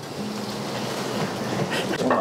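Burger patties and a fried egg sizzling on a flat steel griddle over charcoal: a steady, even hiss.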